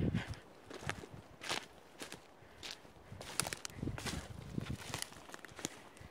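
Footsteps on a pine forest floor, irregular crunching of dry twigs and needles underfoot.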